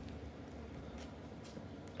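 Faint, steady outdoor background hiss with a couple of soft brief taps, likely handling of the recording device.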